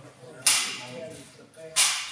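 Two sharp, loud clacks of bocce balls striking, about a second and a quarter apart, each ringing briefly in the hall.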